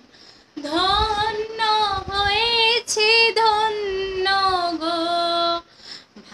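A woman singing a Bengali patriotic song unaccompanied, in long, gliding held notes. The voice comes in about half a second in and breaks off briefly for breath near the end.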